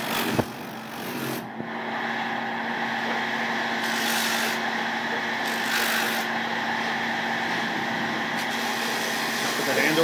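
Electric sanding-drum spindle machine running with a steady hum as a willow cricket bat blade is pressed against the spinning drum, with a rasp of sanding about four and six seconds in. A few sharp knocks right at the start.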